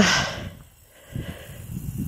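A person's breath, a short hiss that fades within half a second, followed by a faint low rumble.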